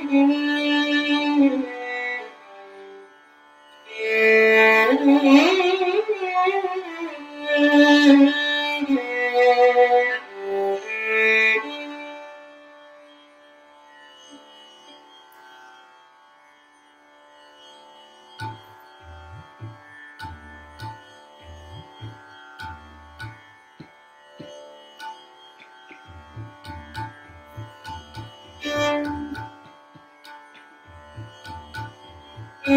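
Hindustani classical violin playing slow phrases that slide between notes over a steady drone. Around twelve seconds in the violin fades to a quieter drone, and soft low drum strokes join in the second half.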